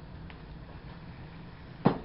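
Steady low background hum, with one sharp knock just before the end.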